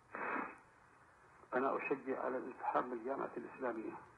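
Speech only: a man speaking Arabic from a lo-fi recording with a narrow, radio-like sound, after a short burst of noise at the start.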